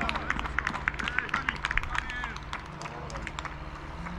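Hand clapping and shouts of 'brawo' cheering a goal. The clapping is dense for the first couple of seconds, then thins out and quietens.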